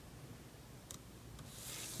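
Faint room tone with a single light click about a second in, then near the end the soft hiss of a clear acetate sheet sliding across cardstock as it is drawn away.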